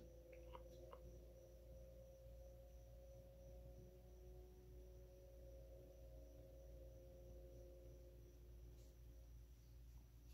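Near silence: room tone with a faint steady hum, and a couple of faint clicks in the first second as the stone is picked up.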